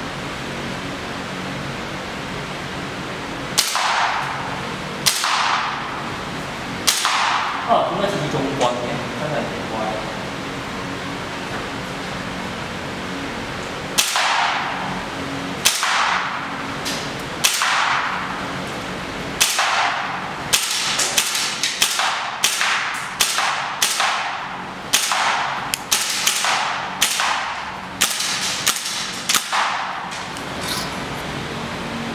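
VFC HK416C gas blowback airsoft rifle fired in semi-auto, one shot at a time, each a sharp crack of gas and cycling bolt that echoes in a large hall. Three shots come well spaced at first. After a pause the shots come quicker, about two a second toward the end.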